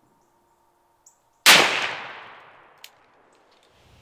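A single shot from a .460 S&W Magnum revolver: one sharp, very loud report about a second and a half in, its echo fading away over the next second and a half. A faint click comes just before the shot.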